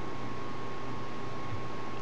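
Steady background hiss of room tone with a faint, steady high tone running through it; nothing else happens.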